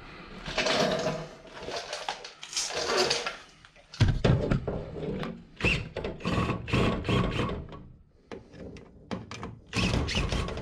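Cordless drill tightening the lower mounting bolts of a card reader in a series of short bursts, after a few seconds of rustling and handling. Sharp clicks come near the end.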